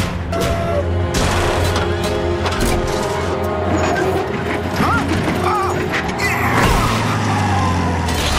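Cartoon action soundtrack: music under sound effects of repeated crashes, booms and mechanical clanking as giant robots seize a big truck.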